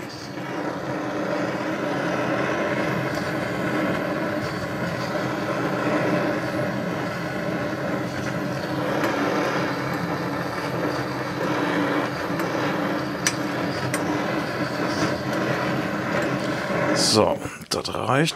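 Handheld gas-cartridge blowtorch burning with a steady hissing flame, heating the aluminium crankcase of a two-stroke moped engine to fit a bearing. The flame stops shortly before the end.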